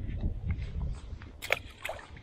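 Wind rumbling on the microphone, then two short sharp sounds near the end as a small perch is dropped back into the canal with a splash.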